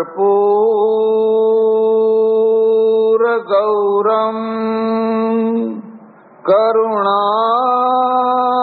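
A man chanting Sanskrit devotional invocation verses in long, drawn-out held notes. There is a brief break about three seconds in and a short pause a little after five and a half seconds before the next long note.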